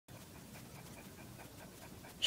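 Dog panting quickly and faintly, about six short breaths a second.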